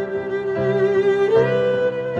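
Violin playing a melody with piano accompaniment: a long held note with vibrato that steps up to a higher note about one and a half seconds in.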